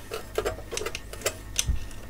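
Small metal parts of a replacement binding post clicking and ticking against the instrument's metal front panel as it is fed through its hole by hand: a run of about eight irregular sharp clicks, with a dull knock near the end.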